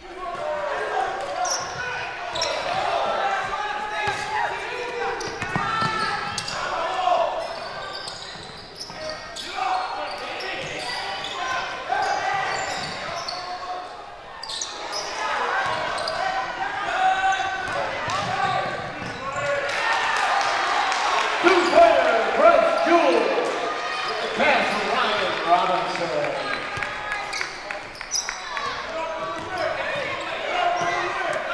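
Basketball game sounds in an echoing gym: the ball bouncing on the hardwood court amid players' and spectators' shouting voices throughout.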